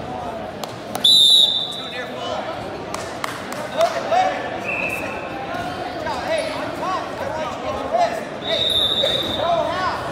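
Referee's whistle blown in a short, loud blast about a second in, and again near the end, over spectators shouting and scattered thuds on the mat.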